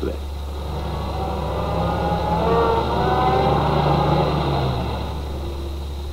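Car engine running as the car drives slowly through a slalom course. The note rises a little and swells midway, then fades as the car moves away, over a steady low hum.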